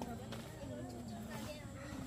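Faint voices talking in the background, with no firecracker bang.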